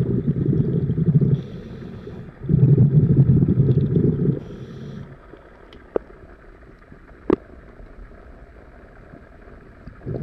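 Underwater scuba breathing through a regulator: two loud bubbling exhalations, each followed by a short, fainter hiss of inhaling. About halfway through the breathing pauses and the water goes quieter, broken by two sharp clicks.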